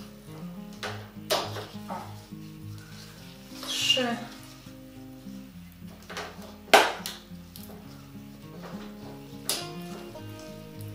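Background music, over which a blade snips through the stems of a Rhaphidophora tetrasperma vine, with a few sharp clicks (the loudest about two-thirds of the way in) and a rustle of leaves as cuttings are pulled from a wire trellis.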